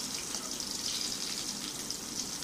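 Eggplant wedges sizzling in hot oil in an aluminium kadai, a steady crackling hiss. The pieces are nearly browned.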